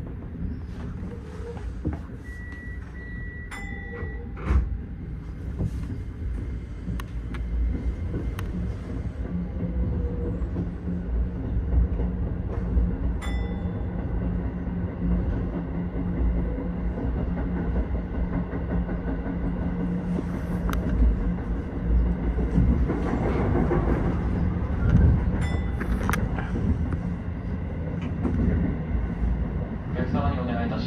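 Keio 8000 series electric train running, heard from the cab: a steady rumble of wheels on rail with a low hum and occasional sharp clicks. A brief electronic tone sounds a few seconds in.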